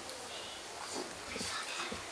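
Dry-erase marker squeaking faintly on a whiteboard as a number and comma are written, with faint voices underneath.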